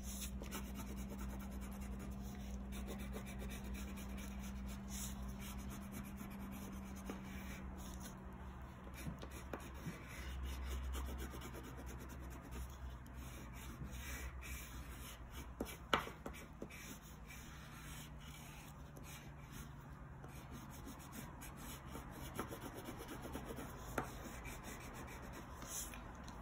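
Wax crayon rubbing back and forth on paper as a large area is coloured in: a faint, steady scratchy texture of quick strokes.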